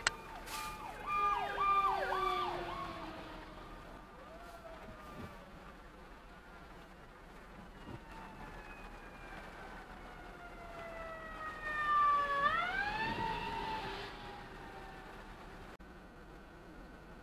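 Emergency vehicle siren heard from a car. A quick series of short up-and-down warbles comes about a second in, then a long slowly falling wail, and the wail sweeps sharply back up about twelve seconds in. A brief sharp click comes right at the start.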